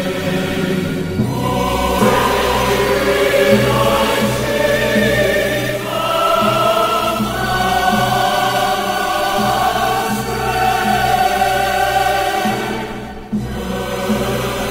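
Choral music: a choir singing held chords over instrumental accompaniment, with a brief drop near the end before the music picks up again.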